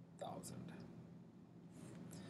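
A brief, faint whispered word about a quarter second in, over a low steady hum; otherwise near silence.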